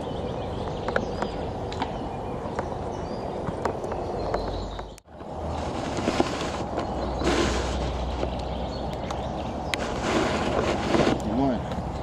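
Steady outdoor background noise with scattered small clicks, broken by a brief dropout about five seconds in, then two louder stretches of hiss.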